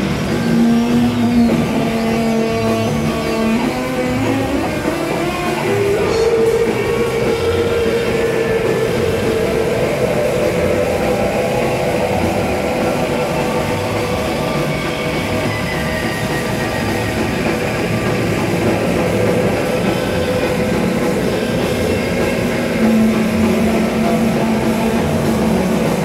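Psychedelic rock band playing live: electric guitar and synthesizer in long droning notes, one sliding up in pitch a few seconds in.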